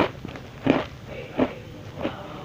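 Close-miked chewing of a crunchy cookie, three sharp crunches about two-thirds of a second apart.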